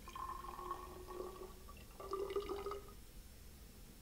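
Water pouring from a flask into a glass graduated cylinder in two short spells: the first lasts about a second and a half, the second starts about two seconds in and stops about a second later.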